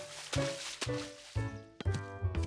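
Cartoon sound effects of a plastic ball splashing into a puddle at the start, then a few light bounces, over background music.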